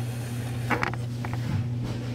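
Steady low electrical hum in a quiet room, with a few faint clicks about a second in.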